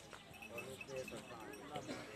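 Indistinct voices of several people talking at a distance, with a few faint knocks.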